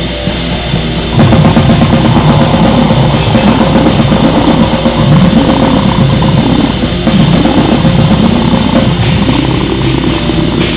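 Goregrind music: heavily distorted guitars and drums playing fast and dense, getting louder about a second in as the full band comes in.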